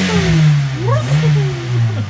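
A small Toyota sedan's engine being revved. The pitch sinks back from one blip, climbs again in a second blip about a second in, then drops back toward idle.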